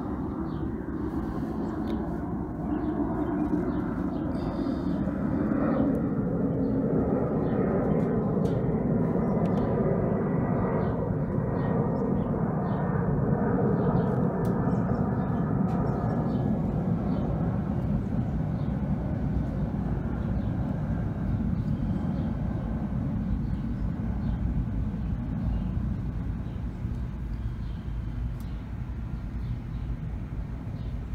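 Low, steady background rumble that swells about three seconds in and eases off gradually after about sixteen seconds, with faint small ticks over it.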